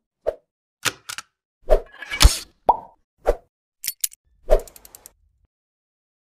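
A string of about ten short pops and thwacks from an animated logo's sound effects, spaced roughly half a second apart, the loudest a little past two seconds in.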